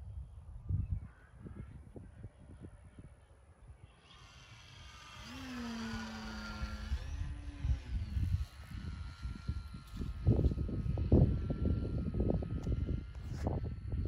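Electric RC airplane's 2216 brushless motor on 4S turning a 10x7 propeller, a whine that swells about four seconds in and falls in pitch as the plane passes, then holds a steady tone. Wind buffets the microphone throughout, with the strongest gusts in the second half.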